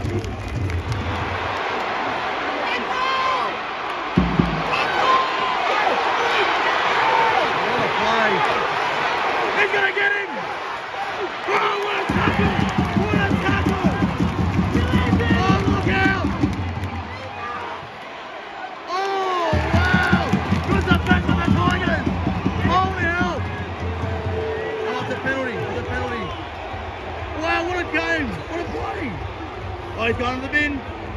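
Stadium crowd noise, many voices at once, under music played over the public-address system after a goal, with a heavy bass that drops out for a couple of seconds a little past halfway and then comes back.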